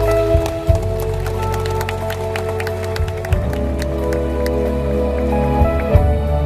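Live band music: held keyboard chords over electric bass, with light scattered percussion hits. The chords change about three seconds in.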